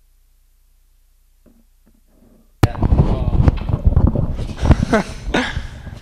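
A low hum with almost nothing else, then an abrupt click about two and a half seconds in, after which several people's voices talk loudly over one another.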